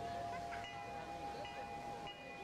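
Metal temple bells ringing: one lower bell tone rings on steadily while higher, smaller chimes are struck twice over it.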